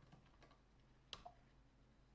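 A few faint computer keyboard keystrokes, with one sharper keypress a little over a second in, as a password is typed and entered at a terminal prompt.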